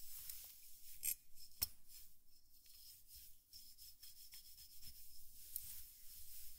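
Soft ASMR rubbing and scratching close on the microphone, a faint scratchy hiss with small ticks, meant to imitate stimulation of the head. There is a sharper tap about a second in and a click about a second and a half in.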